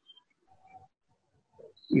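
Near silence in a pause in a man's speech, with a faint short tone about half a second in; his voice resumes near the end.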